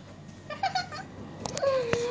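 A cat meowing: a short call about half a second in, then a longer one that drops slightly and holds, with a few sharp clicks from the phone being handled.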